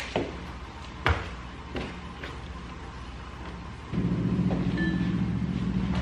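Light knocks and clicks of things being picked up from a car's back seat. About four seconds in, a low steady hum starts.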